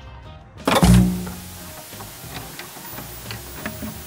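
Glitch-style logo sting: a sudden loud bass hit just under a second in, then a steady static hiss with scattered sharp digital clicks.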